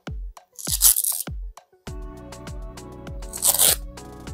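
Electronic background music with a steady kick-drum beat, filling out with sustained chords about halfway. Twice, a short rasping rip of a dog boot's hook-and-loop strap being pulled and fastened tight around a paw; the louder one comes about a second in.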